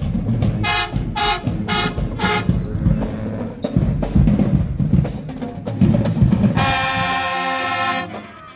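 High school marching band playing: four short, punchy brass hits over drums in the first seconds, then a stretch of mostly drums, then the brass comes in on a long held chord that cuts off at the end.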